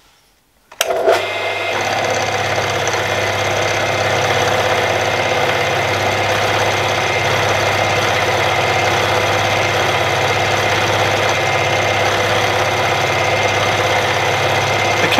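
Milling machine spindle starting about a second in and then running steadily with a low hum and a thin whine, as a chamfer cutter takes a 0.5 mm cut along the edge of a metal block.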